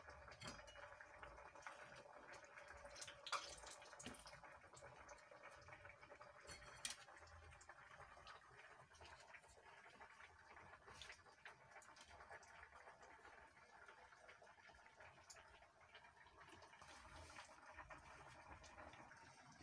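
Near silence: room tone with a faint steady hum and a few faint clicks and taps of wooden skewers and a plate being handled, the clearest about three seconds in and another near seven seconds.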